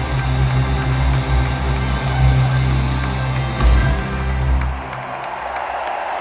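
Rock band with electric guitars, saxophone and drums holding a loud closing chord with heavy bass, cutting off about five seconds in, after which the arena crowd cheers and applauds.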